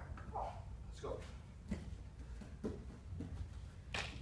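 Short, indistinct voice sounds and breaths from people grappling on a training mat, scattered through the few seconds, with a sharp slap near the end.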